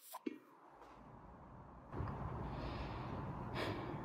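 A soft tap of the phone camera being set in place, then quiet room noise that settles into a low steady hum about halfway through.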